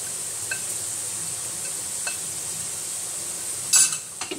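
Chopped onions frying in butter and oil in a pan, a steady sizzle. A short, loud clatter comes near the end.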